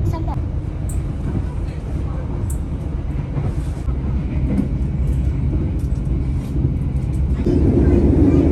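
Passenger train running along the rails, heard from inside the carriage as a steady low rumble; it grows louder near the end.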